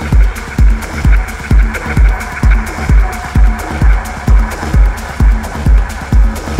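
Techno DJ mix: a steady four-on-the-floor kick drum at about two beats a second, with hi-hat ticks between the kicks over a sustained synth pad.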